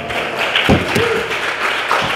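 A congregation applauding, with a few louder claps or knocks about a second in.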